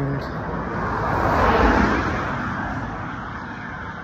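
A car driving past, its noise swelling to a peak about a second and a half in and then fading away.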